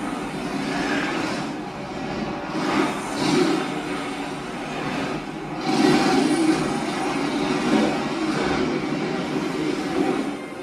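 Explosion and fire sound effects from a TV drama's soundtrack: a loud, continuous rumble and hiss that swells twice, about three and six seconds in.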